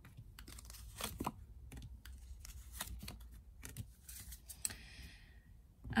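Tarot cards being drawn and laid down on a tabletop: irregular light clicks, taps and rustles of card stock, with a longer sliding rustle near the end.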